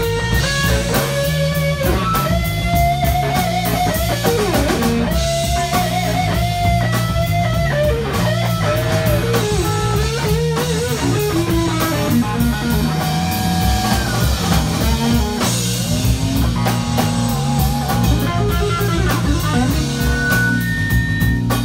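Live rock band playing instrumentally: an electric guitar plays a lead line with bent, gliding notes over a steady bass guitar line and a drum kit.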